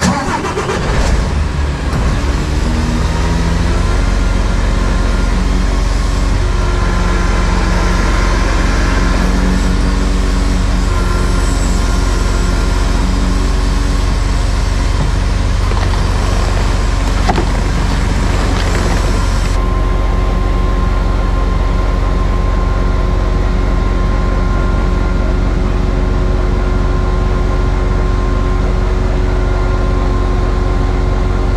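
Truck engine kicking in suddenly and then running steadily at raised speed to drive a loader crane's hydraulics while it lifts a bundle of pipes, with a whine over the engine note. About twenty seconds in the hissy upper part of the sound drops away and a steady whine tone carries on.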